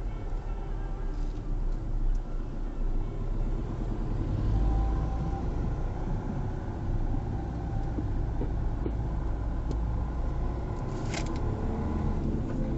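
Road noise inside a moving car, picked up by a dashcam: a steady low rumble of tyres and engine that gets louder about four and a half seconds in, with a brief sharp click near the end.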